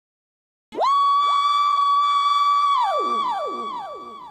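Synthesized DJ intro sound effect: after a short silence, an electronic tone sweeps up and holds steady for about two seconds. It then drops away in a series of falling pitch glides that repeat as fading echoes.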